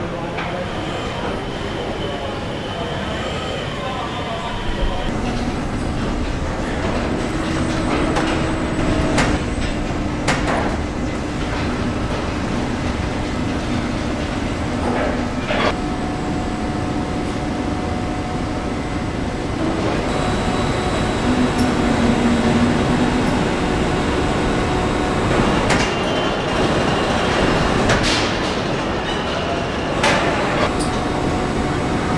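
Car assembly plant noise: a steady machinery hum with whining tones that change as the shots change, and several sharp knocks and clanks along the way.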